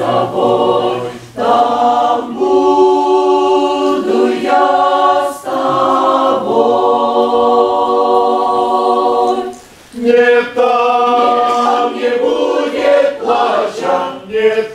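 Mixed church choir of men's and women's voices singing a hymn in harmony, holding one long chord in the middle, with a brief pause between phrases just before ten seconds in.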